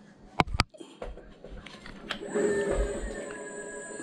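Bird ES4-800 electric scooter's hub motor spinning the wheel up under throttle: an electric whine that rises and then holds steady at its stock 15 mph top speed, with a thin high-pitched tone over it. Two sharp clicks come just before the motor starts.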